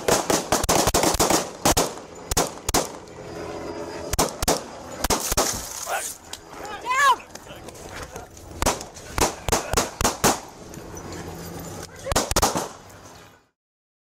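Irregular knocks, scuffs and clatter from a police body camera being jostled against the officer's gear as he moves, with short bursts of voices in between. The sound cuts off abruptly about half a second before the end.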